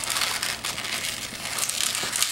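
Inflated latex twisting balloon rubbing against itself and the hands as it is bent into a loop and twisted, a steady rubbery rustling with a few sharper crackles near the end.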